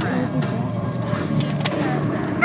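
Steady rumble of a car heard from inside the cabin, with faint voices under it and a few light clicks in the second half.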